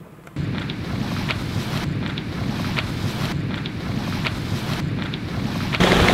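Sailboat under way on open water: a steady rush of wind on the microphone and water along the hull, starting about half a second in.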